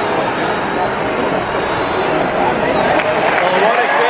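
Large stadium crowd: a dense, steady hubbub of many voices, with nearby spectators' voices in it and a few drawn-out shouts rising and falling near the end.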